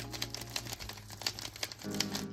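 Quick, irregular clicking and clacking of a 3x3 speed cube's plastic layers being turned, its mechanism packed with ice cream as a lubricant.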